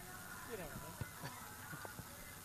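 Distant voices shouting and calling out across an open playing field, with a few sharp thuds, the first about a second in.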